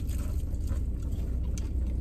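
Crunching bites and chewing of crispy fried chicken wings, a few faint crunches, over the steady low rumble of the car.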